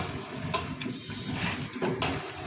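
Small vertical granular sachet packing machine running, its mechanism clattering steadily with a short clack every second or so as it forms and seals sachets.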